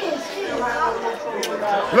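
Several voices talking over one another in a room: indistinct chatter.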